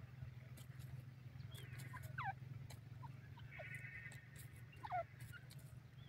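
Grey francolin calling: short notes that slide down in pitch, the loudest about two seconds in and again near five seconds, with a brief rattling call between them, over a steady low hum.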